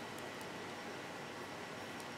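Faint, steady background hiss of room tone, with no distinct sound from the hand wire-wrapping.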